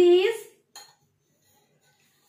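Stainless steel tumblers knocking together in the hands: a brief metallic clink just under a second in, after a drawn-out spoken word at the start.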